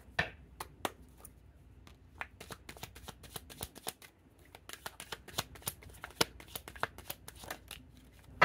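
A deck of reading cards shuffled by hand: a run of quick, irregular card flicks and slaps, with a short lull about halfway through.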